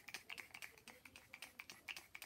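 Fine-mist pump spray bottle of facial mist being spritzed in quick succession: a faint run of short clicking spritzes, about seven or eight a second.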